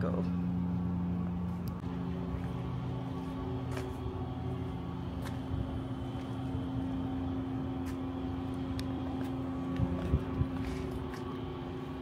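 A steady motor hum with a few constant tones over a low rumble, and a few faint clicks.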